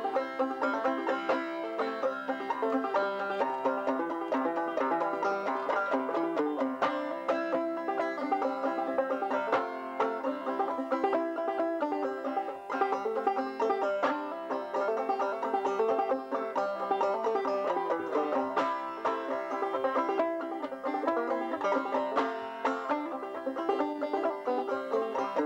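A banjo played solo: a steady, fast run of picked notes in an even rhythm.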